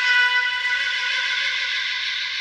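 Trumpet holding one long, breathy note, slowly weakening, in a free improvisation with electronics.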